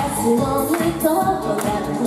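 Live pop song: a woman singing into a microphone over loud backing music with a steady beat.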